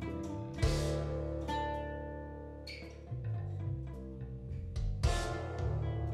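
Steel-string acoustic guitar played over a playback of the guitar arrangement. A big low chord rings out about half a second in and again near the end, with shorter plucked notes between.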